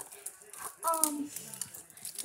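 A girl's short wordless vocal sounds, with light clicking and rattling from small things being handled.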